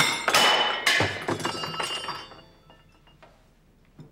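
Glassware and dishes crashing as they are swept off a set table: a sudden crash, a second crash about a second later, then clinking and ringing that dies away after about two seconds.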